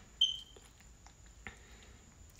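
A brief high-pitched squeak from yarn being pulled tight while tying a knot around a tassel, then near-quiet handling with one faint tick.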